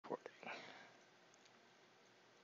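A couple of faint clicks and a short breathy, whispered voice sound from a man close to his microphone in the first second, then near silence.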